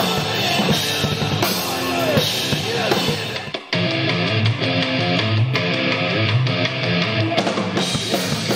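Rock song with a full drum kit, bass drum and guitar playing. It breaks off sharply a little over three and a half seconds in and comes straight back at a different point in the song.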